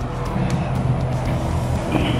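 Steady highway traffic noise, with background music under it.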